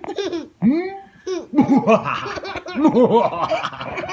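A man doing an exaggerated evil laugh and a baby laughing along, their laughs overlapping. From about a second and a half in, the laughter turns into a quick, continuous run of ha-ha syllables.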